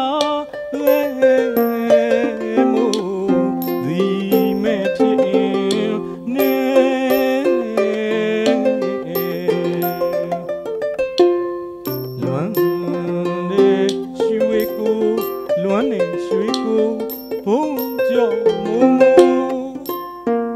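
Burmese arched harp (saung gauk) playing a classical patpyo song, plucked notes running in a melody with a short pause about eleven seconds in. A man's voice sings with it, and small hand cymbals (si) strike at intervals to keep time.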